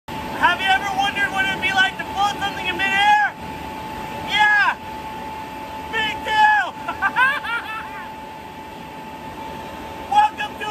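A man yelling and whooping excitedly in high-pitched bursts, with no clear words. Under it runs a steady high whine, which is left on its own for the last couple of seconds.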